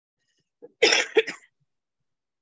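A person coughing, a short double cough about a second in.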